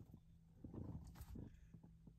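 Near silence: a faint steady low hum, with a few faint soft clicks around the middle.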